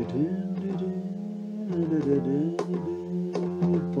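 Acoustic guitar being played, plucked notes ringing over sustained chord tones.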